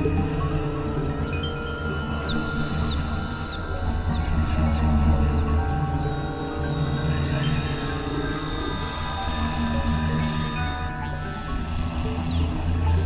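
Experimental electronic synthesizer drone music: a thick, steady low drone under layered held tones. From about a second in a high thin tone enters with short falling sweeps repeating about twice a second, and another high tone takes over about halfway.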